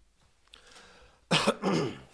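A man clearing his throat with a cough: a faint breath in, then two short, harsh bursts near the end.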